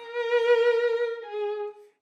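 Solo violin bowing a held note with vibrato, then stepping down to a slightly lower note about two-thirds of the way in; the second note stops just before the end.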